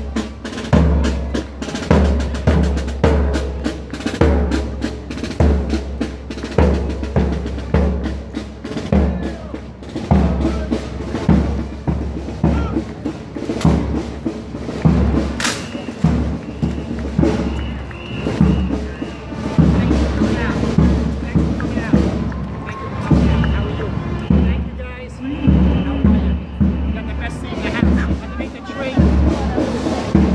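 Parade marching drums: a bass drum beating a steady cadence of about one beat a second, with snare drum strokes around it. The snare strokes thin out about halfway through while the bass drum keeps going.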